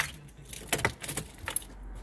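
Car keys jangling on their keyring at the ignition as the key is handled and turned. There is a sharp click at the start, then a cluster of metallic rattles over about a second.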